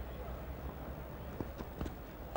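Low murmur of a cricket ground crowd over the broadcast sound. In the second half come a few short, light knocks: the fast bowler's last footfalls and delivery stride, then the bat top-edging a bouncer.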